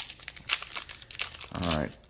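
Foil wrapper of a Topps Chrome Star Wars trading-card pack crinkling as it is torn open by hand: a dense run of sharp crackles.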